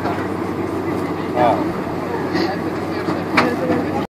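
Steady cabin noise inside a Boeing 747-400 rolling along the runway after landing, with short bits of passengers' voices about a second and a half in, and again near two and a half and three and a half seconds in.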